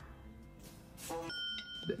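A short, bright bell-like ding from the film's soundtrack about a second and a half in, held for about half a second, after a soft rush of sound.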